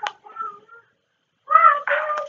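A person's voice: a faint, short vocal sound early on, a half-second pause, then a louder held vocal sound starting about one and a half seconds in.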